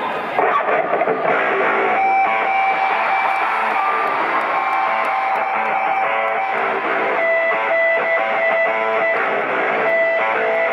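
Electric guitar played live through a concert PA, picking a solo line of held, ringing notes that change about once a second.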